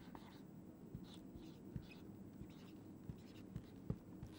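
Faint, irregular taps and scratches of a marker pen writing letters on a whiteboard.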